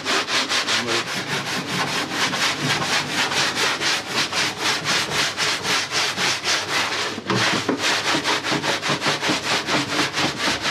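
Metal riddle tray of casters and damp sawdust shaken rapidly back and forth by hand, the pupae and sawdust rasping across the mesh in even strokes about four or five a second, with a brief break about seven seconds in. It is the sieving stage that shakes the sawdust through and leaves the casters behind.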